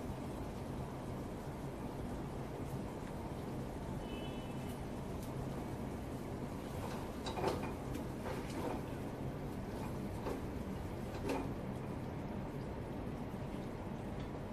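Steady low hum of kitchen background noise, with a few short knocks and clatters of cooking utensils being handled, mostly in the second half.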